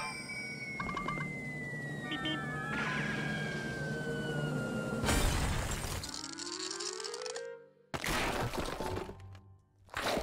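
Cartoon music and sound effects: a long descending whistle slides down for about five seconds and ends in a loud crash. A short rising slide follows, then a second crash near the end.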